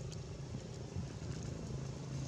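A steady low engine hum, like a motor vehicle running, with a few faint clicks over it.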